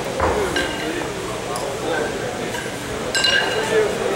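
Pair of steel competition kettlebells clinking together, metal on metal, as they are swung and cleaned in long cycle lifting: a lighter ringing clink just after the start and a louder one about three seconds in.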